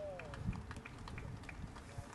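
Faint open-air stadium ambience. A public-address voice echoes and trails off at the start, followed by scattered faint ticks and a dull thump about half a second in.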